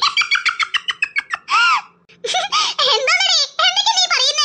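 Only speech: a cartoon character's very high-pitched voice talking in quick phrases, with a short pause about halfway.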